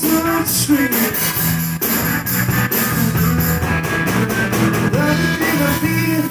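Live rock band playing: distorted electric guitar, bass and a drum kit keeping a steady beat, with brief bits of singing near the start and end.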